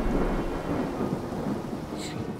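Thunder rumbling and fading away over steady rain, a stormy-night sound effect.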